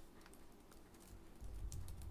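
Faint, scattered clicks of typing on a computer keyboard, with a low rumble joining toward the end.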